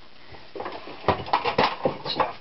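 Irregular clatter and knocks of metal tools and a workpiece being handled at a bench vise, starting about half a second in; no grinder is running yet.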